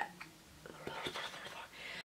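Faint whispering from a young woman, with a few light clicks; the sound cuts off suddenly at the end.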